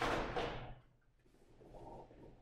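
A sharp slap of contact with the rustle of karate uniforms as one partner grabs and strikes the other, fading within a second, with a softer second sound about half a second in.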